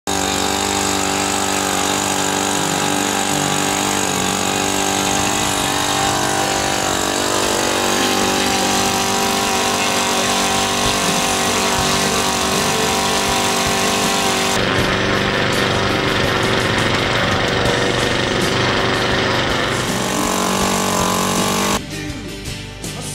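Moki 2.10 single-cylinder glow-fuel two-stroke model aircraft engine running on a test stand during break-in. It is a loud, steady drone whose pitch shifts slightly now and then.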